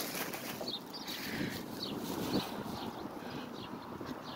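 Wind gusting over a phone's microphone outdoors, with faint short high-pitched ticks scattered through it.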